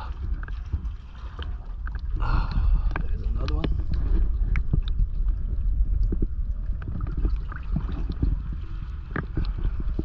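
Water sloshing and lapping against a camera held half-submerged at the waterline, with a steady low rumble and many small splashes and clicks.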